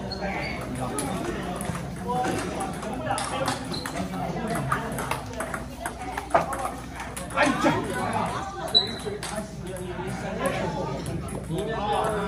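Table tennis balls clicking sharply off paddles and tables at irregular intervals during rallies, against a background of people talking in the hall.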